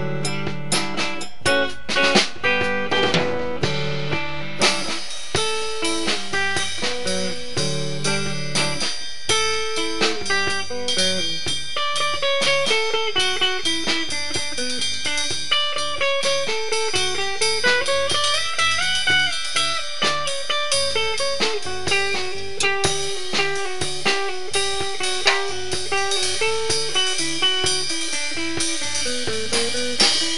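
Live band playing an instrumental blues-rock passage on electric guitars over a drum kit, with a guitar lead line that climbs and falls in pitch through the middle.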